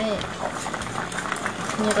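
Spicy pork-lung curry boiling in a large stainless steel pot on the stove: a steady bubbling with many small pops.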